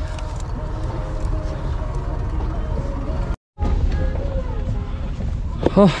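Vehicle engine idling: a steady low rumble, broken by a brief dropout just past the middle.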